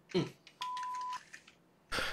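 A short 'mm' from a man's voice, then a single electronic beep: one steady, high, pure tone about half a second long, of the kind used as a censor bleep.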